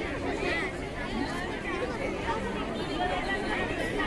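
Many people talking at once: a steady chatter of overlapping voices, with no single speaker standing out.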